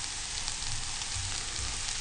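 Onions and freshly added carrot strips frying in sunflower oil in a pan: a steady sizzle with a few faint pops.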